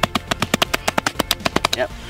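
A fast run of sharp cracks and snaps, about ten a second, as the roots and tough fibres of a large agave tear while the plant is pulled and pried out of the ground. They stop just before it comes free.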